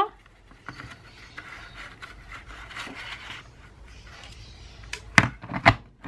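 Paper sliding and rustling against a plastic planner punch board as the sheet is lined up. Near the end come two sharp plastic clacks about half a second apart as the punch board's lid is pressed down to punch the holes.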